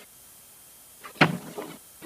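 A single sharp knock about a second in, with a short trailing sound after it, over quiet hall room tone.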